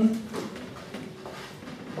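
A man's speech trailing off at the start, then a pause with only quiet room sound.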